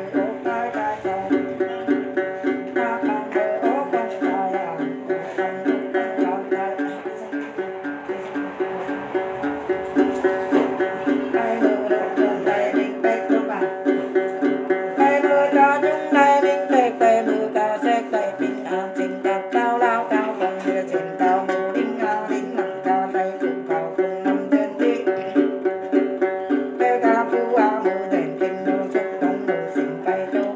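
Đàn tính, the Tày gourd-bodied long-necked lute, plucked in a steady, even repeating rhythm.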